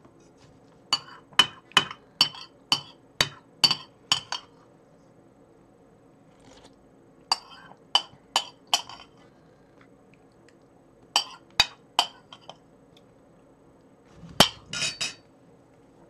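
Metal spoon clinking and scraping against a ceramic bowl in quick runs of taps as oatmeal is scooped out, with a louder knock near the end. A low steady hum runs underneath.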